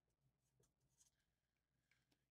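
Near silence: the microphone is gated off between sentences.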